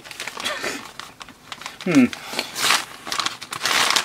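A small white paper-and-plastic RS Components packaging bag crumpled and crinkled in the hands, rustling on and off and loudest in the last second and a half.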